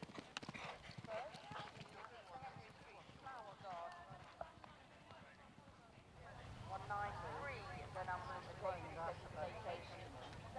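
Hoofbeats of a cantering horse on grass, strongest in the first second or so and then fading, with people talking indistinctly in the background, more clearly in the second half.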